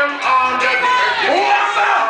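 Reggae music playing loud over a sound system, with a voice carrying over the record.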